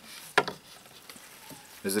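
A small framed solar panel being handled and lifted off its plastic wrapping: a single sharp click about half a second in, then faint crinkling.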